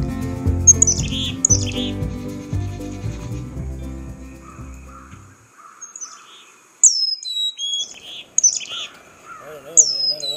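Background music fading out over the first half, then black-capped chickadees calling: sharp, high chirps that drop in pitch, in several quick series.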